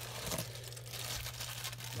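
Clear plastic bag crinkling and rustling as it is handled, over a low steady hum.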